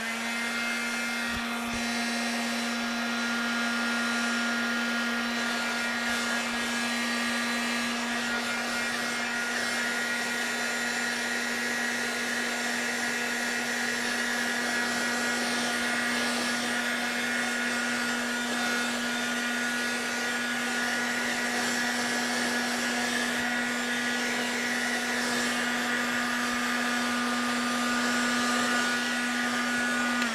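Handheld electric dryer running steadily, a motor hum with rushing air, blowing over wet acrylic paint to dry it.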